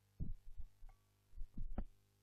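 A series of about six muffled low thumps in uneven groups, the last three coming close together, over a steady low hum on an old film soundtrack.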